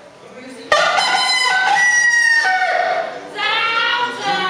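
A rooster crowing: one long, loud crow starting suddenly just under a second in. Near the end, music with singing begins.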